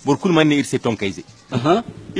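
Speech only: a man talking, with a brief pause about one and a half seconds in.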